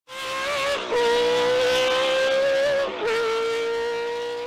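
A high-revving racing car engine held at a nearly steady pitch. It dips briefly twice, about a second in and again near three seconds, each time dropping slightly in pitch as if shifting up a gear.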